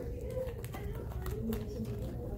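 Low, indistinct murmured talking, with light rustling and small clicks of handled paper.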